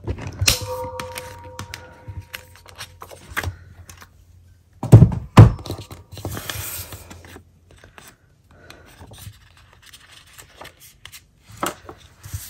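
A Happy Planner disc punch pressed to re-punch a hole in a planner page: a sharp click with a short metallic ring about half a second in. Two loud thumps follow about five seconds in, then paper sliding and rustling as the page is handled on the desk.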